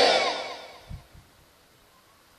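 The end of a man's voice through a microphone and loudspeakers, echoing in the hall and dying away within about the first second, then near silence.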